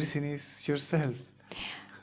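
Speech only: a voice talking in short phrases with brief pauses.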